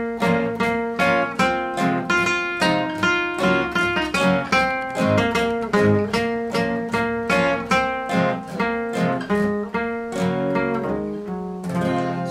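A steel-string acoustic guitar and a nylon-string classical guitar playing a song together, notes picked in a steady rhythm, with notes held longer near the end. One player is a beginner who has been learning guitar from scratch for about an hour.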